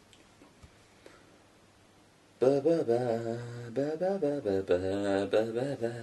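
Near silence, then about two and a half seconds in a man starts a wordless vocal tune in a low voice, long wavering held notes that slide up and down.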